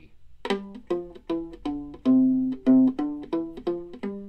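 Viola notes on the C string, mostly plucked, played as a quick run of about a dozen notes that step up and down the five-note scale from open C to G (open string, then first to fourth finger). Two notes near the middle ring a little longer and louder.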